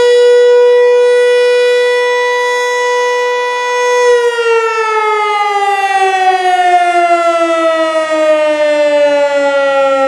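American Signal T-121 electromechanical siren sounding the noon whistle, loud and single-toned. It holds a steady pitch, then about four seconds in it begins winding down, the pitch falling steadily.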